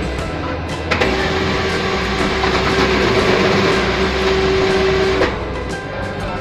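ICBC cash deposit machine's banknote mechanism running as it draws in and counts the inserted stack of ten 100-yuan notes: a steady motor hum with a fast whirring rustle, starting about a second in and stopping abruptly near the end.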